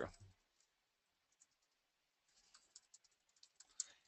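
Faint computer keyboard typing: a scattered run of quiet key clicks in the second half, after a stretch of near silence.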